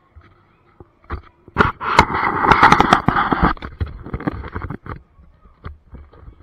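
Camera scraping and knocking against the dirt ground as it is handled and moved: a few sharp clicks, then a burst of rough scraping and rustling with many clicks from about a second and a half in, dying away near the end.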